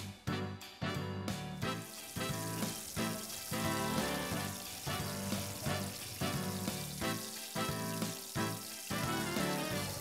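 Background music with a beat, over pork slabs deep-frying in hot oil with a steady sizzle.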